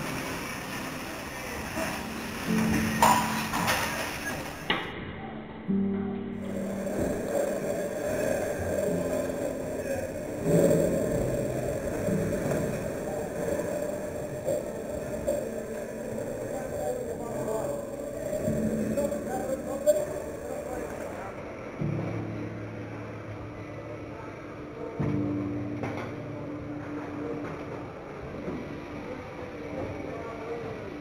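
Background music with calves bawling several times, each call lasting a second or two.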